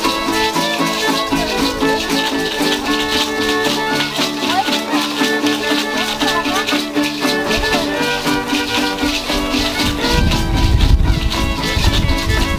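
Traditional folk music: a fiddle over plucked strings, with shaken rattles keeping a steady beat. A low rumble joins about ten seconds in.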